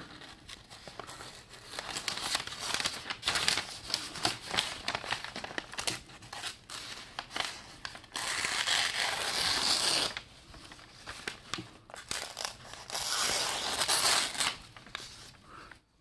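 A D2 steel knife blade (Eafengrow EF7 flipper) slicing through a loose sheet of newspaper held in the hand, with the paper rustling and crinkling between strokes. There are several longer hissing cuts, the longest about eight seconds in and again around thirteen seconds in. It is a paper test of the edge, which shows the blade is sharp.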